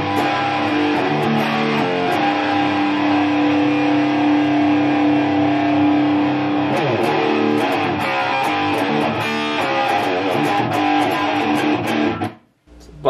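Electric guitar played through a Genz Benz Diablo 100 tube amplifier: strummed chords and long held notes, loud and steady. It is a play-test of the amp after its output-tube bias has been reset, and the amp sounds fairly stable.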